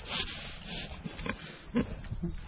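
Pigs grunting close up, a few short grunts over a rough snuffling noise.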